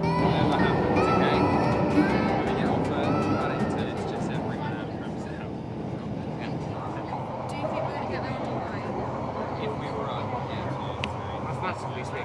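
Music fading out over the first few seconds, giving way to the steady rumbling noise of a London Underground tube train running, heard from inside the carriage, with faint scattered clicks and rattles.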